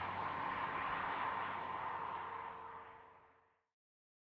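A car driving, its engine and tyre noise with a steady hum fading out over about three seconds, then silence.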